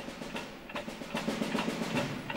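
Steady clock-like ticking with a snare drum in the orchestral score marching in time with it.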